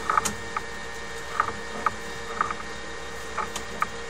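Sewer inspection camera reel and push cable moving through the line: a steady low hum with irregular light clicks and ticks.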